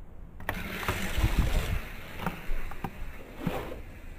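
A die-cast Hot Wheels car released from a starting gate with a sharp click about half a second in, then rolling down orange plastic Hot Wheels track with a steady rushing rattle and a few sharp clicks along the way.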